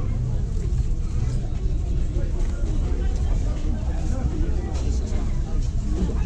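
Indistinct voices outdoors over a steady low rumble.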